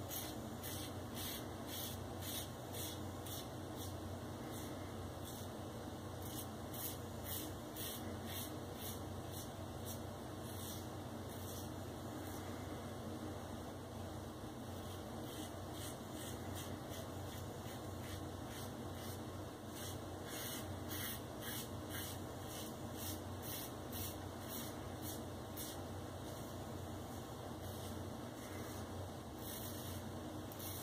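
Maggard Razors open-comb safety razor with a Feather blade scraping through lathered three-day scalp stubble in short strokes, about one or two a second. The blade, on its second shave, cuts without pulling or tugging.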